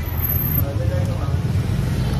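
Steady low rumble of road traffic going by, with faint voices in the background.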